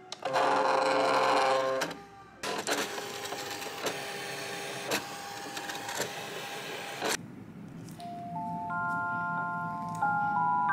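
Electronic craft cutting machine running: a loud motor whir for about a second and a half as the sheet is fed in, then several seconds of steady motor whirring with small clicks as the blade carriage cuts the paper, stopping abruptly about seven seconds in. Near the end a light glockenspiel-like tune of rising chime notes begins.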